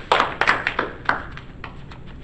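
A small group of people clapping hands together in a steady beat, about three claps a second. The clapping fades out about a second in, leaving a few faint scattered claps.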